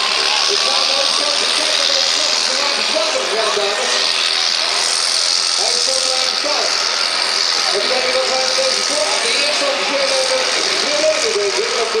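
Superstock pulling tractor's diesel engine running at idle, with a steady high hiss over it, under continuous voices talking.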